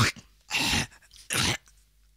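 A break in a hip-hop track with the beat dropped out: two short, harsh noisy sounds, one about half a second in and one just after a second in, with silence between them.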